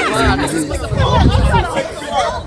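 Several people's voices chattering at once, with a low rumble underneath.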